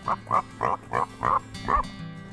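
Pig grunting, about six short grunts in quick succession, over quiet background music.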